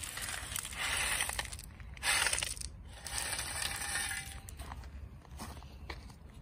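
Footsteps crunching on loose white decorative rock, several gritty crunches with the loudest about two seconds in.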